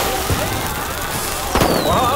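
Fireworks going off: a steady crackling with a sharp bang about one and a half seconds in.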